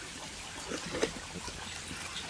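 Water trickling steadily, with a few faint clicks about a second in as a plastic equipment box is handled.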